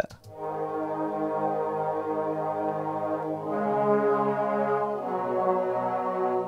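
DX7 synth pad holding chords of open fifths. The chord steps to new notes about halfway through and again near the end.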